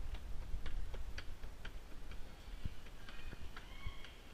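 Footsteps on a hard indoor floor, sharp clicks about two a second over a low rumble. Faint distant voices come in near the end.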